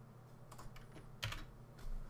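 A few keystrokes on a computer keyboard: about four short, faint clicks, the loudest a little past halfway and another near the end.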